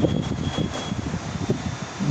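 A steady low rumble with a hiss, and a faint thin high whine through the first second.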